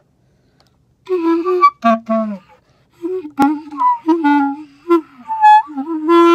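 Clarinet played haltingly in a beginner's way: short, uneven notes that waver in pitch and break off, with gaps between them. One sharp click about halfway through.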